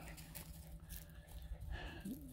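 Faint background noise: a low steady hum under quiet outdoor ambience.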